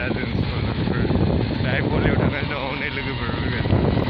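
Wind rumbling steadily on a handheld camera's microphone outdoors, with an indistinct voice faintly underneath.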